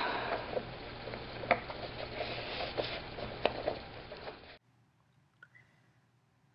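A wide paintbrush works wet matte medium into glued fabric while the fabric is scrunched up by hand: soft rustling and scratching with light taps. It cuts off abruptly about four and a half seconds in.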